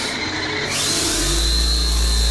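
A funhouse room effect: a rushing hiss that begins under a second in, joined about a second in by a deep steady rumble, over a steady high-pitched tone.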